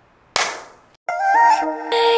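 A single sharp clap-like crack about a third of a second in, fading over half a second. About a second in, instrumental background music starts with a light stepping melody.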